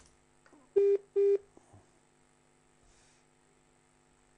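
A telephone line beeping twice, two short tones of the same steady pitch in quick succession about a second in, heard over the studio's phone-in line.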